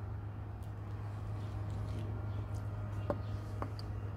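A steady low background hum under faint outdoor ambience, with two soft clicks about three seconds in.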